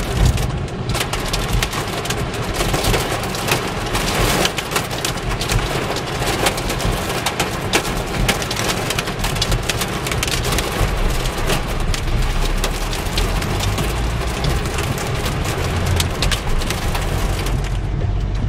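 Hail and heavy rain pelting a car's roof and windshield, heard from inside the car: a dense, unbroken clatter of countless small hits.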